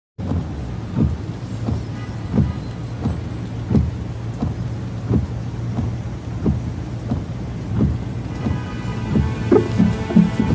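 Inside a car's cabin: a steady low engine and road hum with a regular thud about every 0.7 seconds from the windshield wipers sweeping through rain. Music with held tones comes in near the end.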